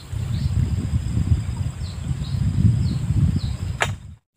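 Low, gusting rumble of wind buffeting the microphone. Over it, a short, high, falling call repeats about every half second and a faint steady high insect drone runs throughout. A single sharp click comes just before the end.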